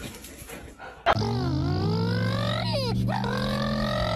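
A dog's long, drawn-out whining howl starts abruptly about a second in. Its pitch slides down and then back up, over a steady low hum.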